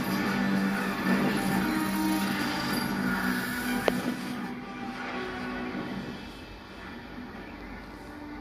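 A film soundtrack heard through a television's speakers: a musical score holding sustained low notes under a dense rushing noise, with one sharp click about four seconds in, after which it grows quieter.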